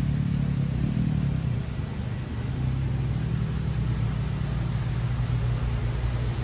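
A steady, low mechanical hum from a running motor, even throughout.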